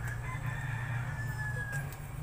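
A faint animal call holding one long, slightly falling note for most of two seconds, over a steady low hum.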